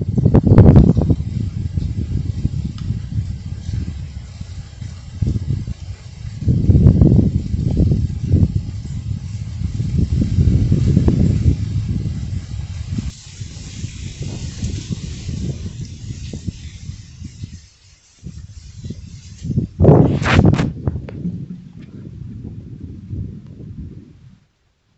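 Wind buffeting the microphone outdoors: uneven low rumbling gusts over a faint steady hiss, with a louder burst near the end.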